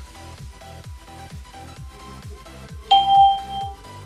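A cheap waterproof Bluetooth shower speaker sounds a single steady electronic beep, lasting just under a second about three seconds in, signalling that it has paired with the phone. Quiet background music with a steady beat plays underneath.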